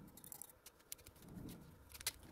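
Faint rustling and light clicks of a small plastic zip bag of mica powder and a tiny measuring spoon being handled, with a soft low bump about halfway through.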